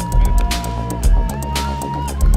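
Music with a steady beat: pulsing bass and regular drum hits under sustained synth-like notes.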